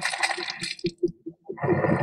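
Sound-effect creature growl in the manner of the MGM lion's roar: a short rough snarl at the start, then scattered clicks and low grunts, with the next loud growl building about a second and a half in.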